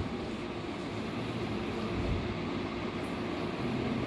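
Steady low rumble of background noise, even and unbroken.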